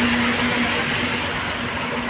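Highway traffic on a wet road: a steady low engine drone from heavy vehicles over a hiss of tyres on wet asphalt, easing off slightly.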